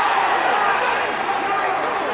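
A male football commentator's drawn-out excited call at a goal, trailing off just after it starts into a steady wash of noise.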